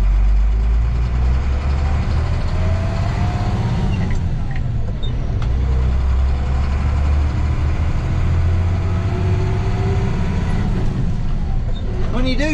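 Work truck's engine heard from inside the cab while driving, a steady low drone with the revs climbing in a rising whine twice and dropping back between, as it accelerates through the gears.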